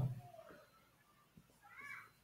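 A whiteboard marker squeaks on the board once near the end, a short faint squeak that rises and falls in pitch as a curved stroke is drawn.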